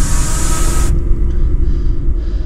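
Horror-film sound design: a loud, low rumbling drone with a hissing swell on top that cuts off suddenly about a second in.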